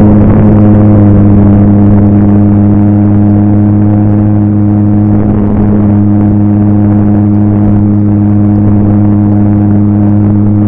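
Model airplane's engine and propeller droning steadily at a constant pitch, picked up at close range by a camera mounted on the plane, with rushing wind noise.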